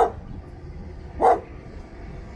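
A dog barking twice, two short loud barks about a second apart.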